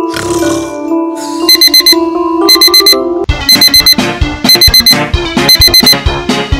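Digital alarm-clock beeping in quick groups of four or five beeps, a group about once a second, starting about a second and a half in. It plays over background music that picks up a strong beat about halfway through.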